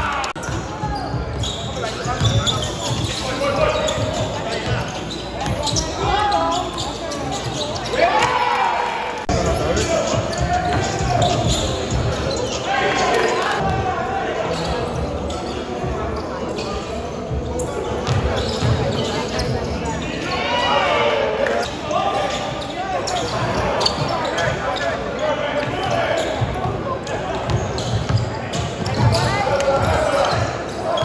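Live sound of an indoor basketball game: the ball bouncing on the court as players dribble, with players' voices calling out and echoing around the hall.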